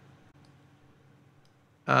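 A few faint, separate clicks from computer controls, over quiet room tone, then a man's loud drawn-out "uh" near the end.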